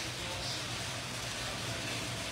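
Steady background noise: a low hum under a faint hiss, with no distinct event.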